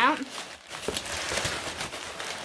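Packing material rustling and crinkling as it is pulled out of a parcel, with a few sharper crackles about a second in.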